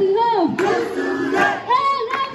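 A group of voices chanting a Deusi Tihar song together in unison.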